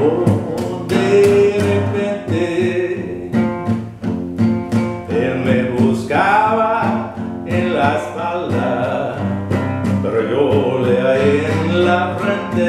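Acoustic guitar strummed in a steady rhythm. A man's voice sings over it about halfway through and again near the end.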